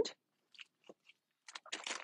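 Faint crinkling of cellophane product packaging being handled: a few scattered ticks, then a short burst of crackles near the end.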